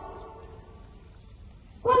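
A pause in speech over a public-address loudspeaker outdoors: the last word rings away early on, leaving faint background hum and haze, and the amplified voice starts again near the end.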